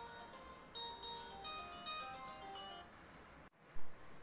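Mobile phone ringtone playing a tinkling melody of quick high notes, which stops a little before three seconds in: a phone going off during a concert. A short loud sound follows just before the end.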